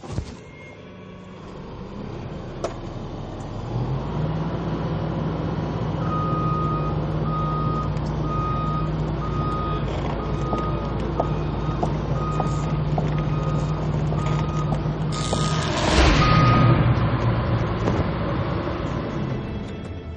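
Caterpillar 325C excavator's diesel engine coming up to speed and running steadily, with its travel alarm beeping about one and a half times a second. About fifteen seconds in, a loud sudden burst of noise breaks in: the electrical contact that shocks the worker standing by the machine.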